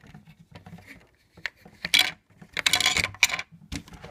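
Plastic building-brick pieces of a toy tank clicking and rattling under the fingers, in scattered sharp clicks with a dense run of them a little past halfway.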